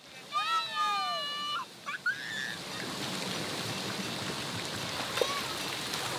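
A high-pitched shout from a child lasting about a second, then a couple of short calls. After that comes a steady wash of splashing pool water with faint voices.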